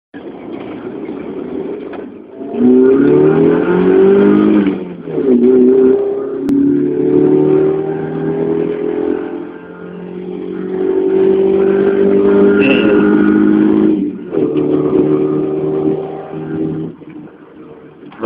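A Mazda 323's 1.5-litre 16-valve four-cylinder engine heard from inside the cabin, accelerating through the gears. Its pitch climbs, then drops at each gear change, several times over.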